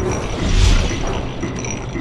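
Logo-intro sound effects of turning machinery: mechanical clanks and creaks over a loud low rumble that swells about half a second in, with a thin steady high tone running through.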